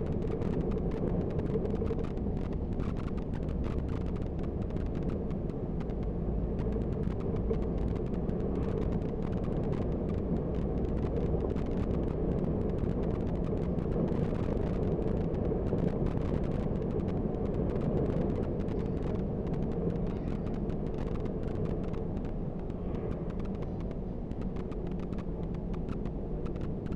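Bus engine running and tyres on the road as the bus drives at a steady pace, a continuous, even sound concentrated in the low end.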